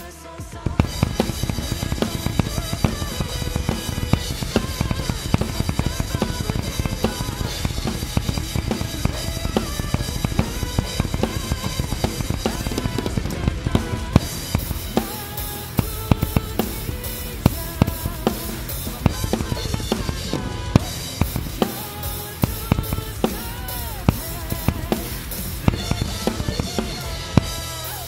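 Acoustic drum kit played hard along with a nu-metal backing track: dense bass drum and snare hits under crashing cymbals. The full drumming kicks in just under a second in, after a quieter passage.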